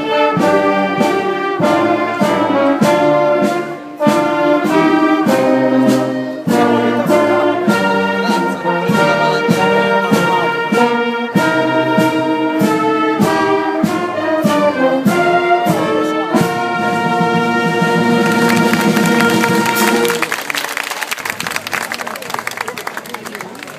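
Brass band playing a slow tune in sustained chords, ending on a long held chord that stops about twenty seconds in, with a crackling noise building beneath it near the end.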